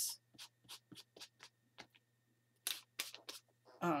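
A small hand-held blending tool dabbed and rubbed on ink-wet paper: a run of short, irregular scratchy dabs, then a quicker cluster of longer rubbing strokes a little past halfway.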